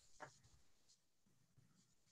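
Near silence: faint room tone over a video call, with one faint brief noise about a quarter second in.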